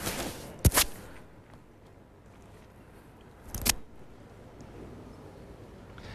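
Quiet hall background with three short, sharp knocks: one at the very start, another just under a second in, and a third nearly four seconds in.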